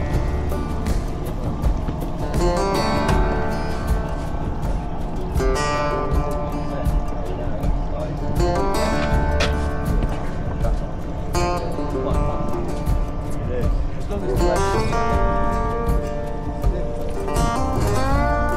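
Background music: a song with a singing voice over guitar.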